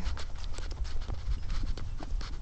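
Footsteps and handling knocks from a handheld phone as the person carrying it walks, heard as many irregular clicks over a low rumble.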